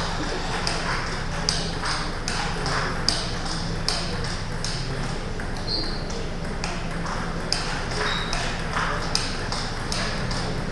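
Table tennis ball being struck by bats and bouncing on the table in a rally: sharp clicks several times a second at an uneven pace, echoing in a large sports hall.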